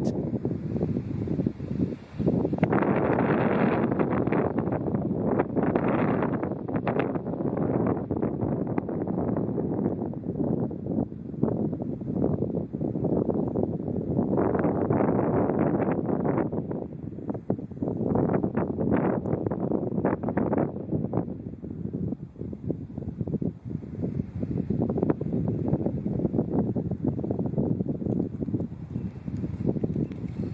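Wind buffeting the microphone in gusts, a rough rumbling noise that swells and drops every second or two.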